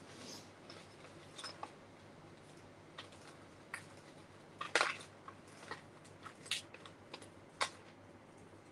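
Paper die-cut pieces rustling and a plastic tub clicking as hands sort through them: scattered light taps and rustles, the loudest a short clatter about five seconds in.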